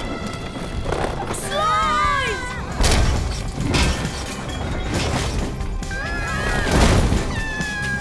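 Cartoon action soundtrack: background music under a string of crashes and whooshes as debris flies, with high, wavering, gliding squeals about a second and a half in and again near the end.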